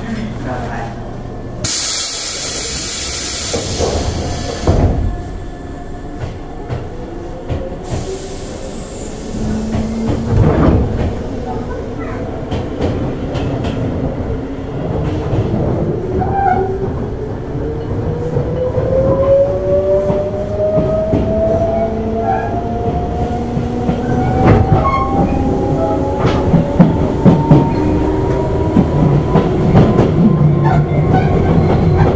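Tobu 8000-series electric train heard from aboard its motor car, setting off: a burst of air hiss about two seconds in, then a rising whine from the traction motors and gears as the train gathers speed. Rail-joint clacks sound under it.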